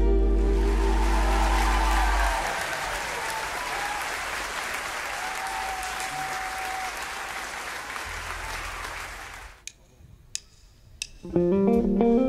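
A large audience applauding at the end of a piece, over the band's last held low note, which fades out about two seconds in. The applause cuts off suddenly near the end. A few soft clicks follow, then a plucked string instrument starts the next piece.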